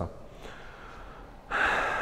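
Quiet room tone, then near the end a man's short, sharp intake of breath.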